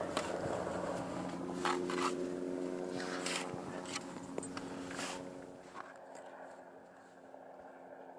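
Shovel blade cutting and scraping through wet sand and mud in a clam bed: several short scrapes over the first five seconds, then quieter. A steady low engine-like hum runs underneath.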